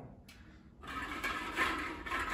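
Plastic draw balls being stirred by hand in a glass bowl: a dense rattling that starts a little under a second in, after a brief lull.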